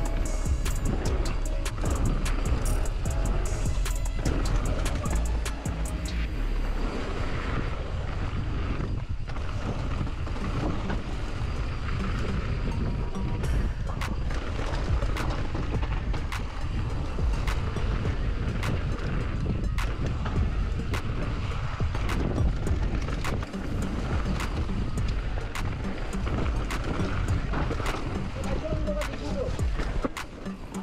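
Background music mixed with wind on the microphone and the rattle of a mountain bike riding a downhill trail, with frequent sharp clicks and knocks.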